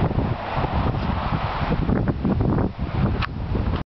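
Wind buffeting the microphone: a loud, irregular low rumble that cuts off suddenly near the end.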